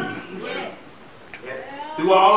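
Faint drawn-out, wavering voices from the congregation, fading about a second in and rising again near the end.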